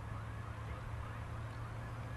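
Steady low machine hum, fairly faint, with faint short chirps repeating above it.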